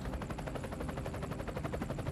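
Helicopter rotor chop: a rapid, steady beat of blade pulses.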